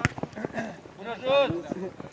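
A football kicked once, a sharp thud right at the start, followed by voices calling out across the pitch.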